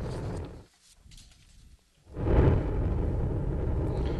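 Low rumble of a Delta IV rocket's RS-68 main engine and GEM-60 solid rocket motors in flight, heard from the ground. The rumble cuts out to near silence for about a second and a half, then comes back and swells briefly before settling.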